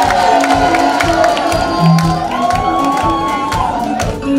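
Live band playing, with a drum kit keeping a steady beat under bass notes and long held high notes that step up in pitch about two seconds in; the audience cheers over the music.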